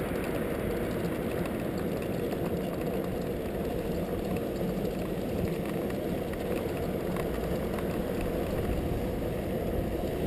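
Steady rush of wind over the microphone, mixed with tyre and road noise from a recumbent cycle rolling along at speed.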